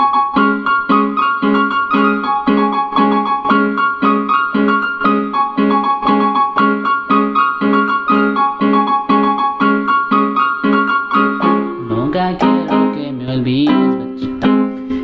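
Yamaha PSR-E223 portable keyboard played with both hands: a chord repeated about twice a second in the left hand under a high right-hand melody moving between a few notes. The steady pattern breaks off near the end.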